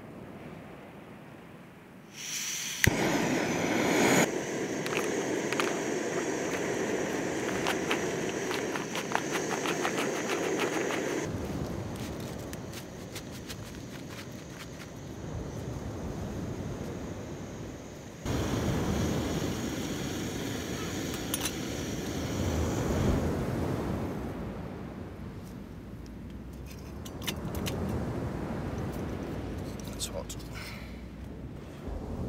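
A small gas-canister camping stove burner running under a metal pot, a steady rushing hiss with crackling clicks. It starts suddenly about two seconds in, then drops lower and comes back partway through.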